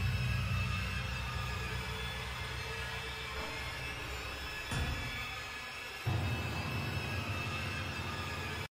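Dark, ominous horror-style soundtrack music: a low, steady drone that slowly fades, with a fresh low swell at about five seconds and another about a second later.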